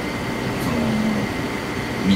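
Steady background room noise with a faint, thin electrical whine. A brief low voice-like hum comes about a second in.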